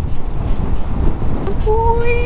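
Wind rushing over the microphone of an action camera on a moving electric scooter, a loud steady low rumble. About one and a half seconds in a steady held tone begins and carries on.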